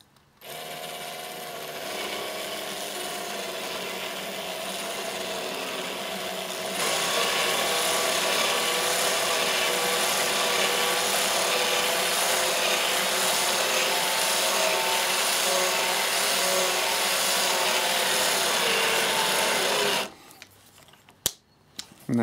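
Cordless drill driver running a drill-and-tap bit into acrylic sheet, cutting an M5 thread lubricated with WD-40: a steady motor whine with the rasp of the cutting, getting louder and harsher about seven seconds in. The drill stops about two seconds before the end, followed by a single click.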